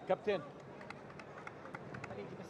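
Pitch-side sound at a football match: a short shout from a man's voice right at the start, followed by a run of sharp, irregular ticks over the steady background of a sparsely filled stadium.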